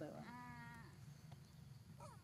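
A single drawn-out vocal call, held steady for under a second and dipping slightly at its end, then faint background.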